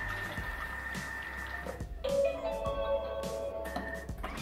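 Background music with held notes that change about two seconds in. Underneath it runs a low steady hum from the Bimby (Thermomix) motor, turning its blade at speed 3 to mix coconut flour into warm water.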